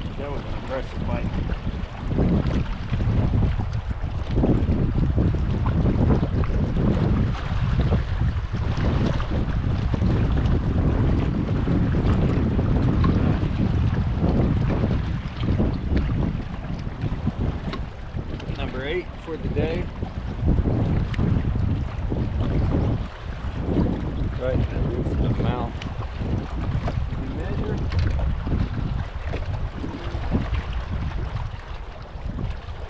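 Strong gusting wind buffeting the microphone, a loud low rumble that swells and eases with each gust.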